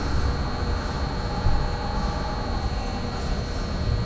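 Jet engine running steadily: an even low rumble with a thin, steady high whine over it.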